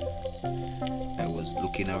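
Background music with steady held chords that change every half second or so; a man's narrating voice comes in near the end.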